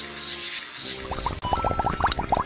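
Cartoon electrocution sound effect: a steady crackling electric buzz, then, about a second in, a fast run of short rising chirps, over a music track.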